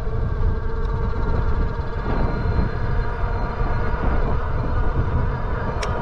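Electric bike under way on throttle: a steady whine from its 750 W rear hub motor under a heavy rumble of wind buffeting the microphone. There is a sharp click near the end.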